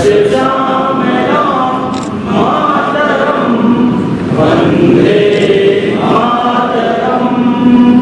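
A group of people singing together in unison, in long drawn-out notes.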